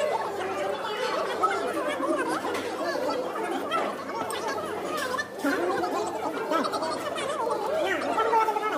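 Voices chattering throughout, several talking over one another, with a little laughter.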